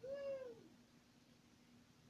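A cat meowing: a brief call, then a longer meow that rises and falls in pitch, over within the first second.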